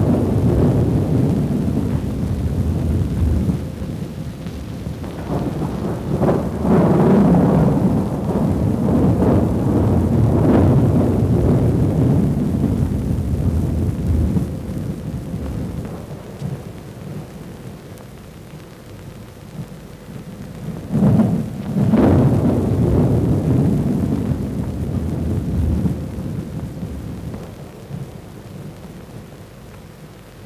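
Rolling thunder over steady rain on an old film soundtrack. The loudest peals come about six seconds in and again about twenty-one seconds in, and the storm dies down toward the end.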